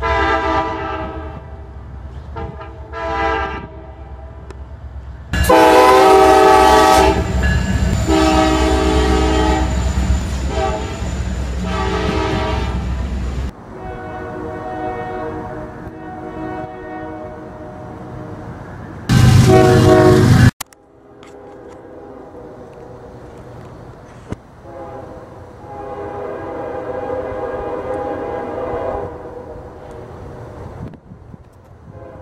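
Diesel locomotive air horns sounding, several short blasts and then a loud long blast from an approaching freight locomotive. A second horn follows, a fouled third-generation Nathan K5HL five-chime horn, its chord sounding off because a bell is not sounding cleanly. It gives a very loud burst and then further blasts near the end.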